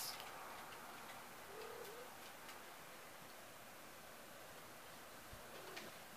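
Near silence: quiet room tone with a few faint scattered ticks and one short, soft call-like sound about one and a half seconds in.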